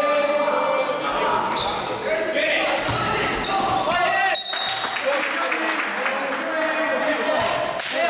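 Voices calling and shouting across an echoing gym during a basketball game, with a basketball bouncing on the court floor.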